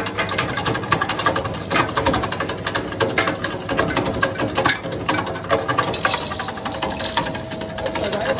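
Gond (edible gum) cutting machine running, its blades chopping lumps of gum fed through the hopper with a loud, rapid, dense clatter.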